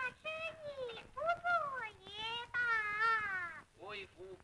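A high voice singing a few long, drawn-out notes that slide up and down, the last and longest one wavering with vibrato.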